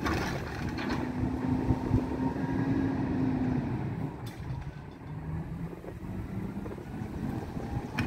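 Diesel engine of a Mack LEU garbage truck running at raised revs to drive the hydraulics of its Heil Curotto-Can arm as it dumps and cycles, the engine note dropping lower about four seconds in. A single sharp click sounds about midway.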